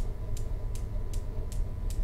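Steady ticking, a little under three ticks a second, over a low rumble.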